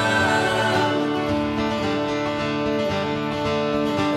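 A live band playing an instrumental passage led by strummed acoustic guitars, with electric bass underneath and no singing.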